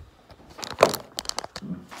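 Handling noise as a hand-held camera is moved and set down on a surface. There is one knock a little under a second in, followed by a quick run of light clicks and taps.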